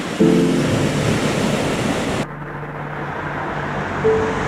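Ocean surf and wind on the microphone, a steady hiss of noise. About two seconds in the sound cuts suddenly to a duller, quieter rush with a low steady hum underneath.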